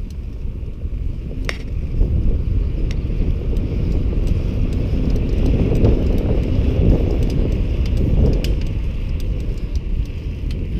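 Wind buffeting the microphone of a camera on a moving bicycle, a steady low rumble of riding noise that grows louder from about two seconds in. A few sharp clicks or rattles are scattered through it.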